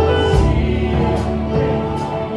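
Gospel music: a choir singing sustained notes over a strong bass line.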